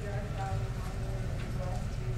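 A woman's voice speaking indistinctly at a distance in a reverberant room, over a steady low hum.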